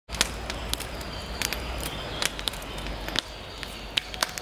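Wood campfire crackling: irregular sharp pops and snaps, several a second, over a low steady rumble that drops away about three seconds in.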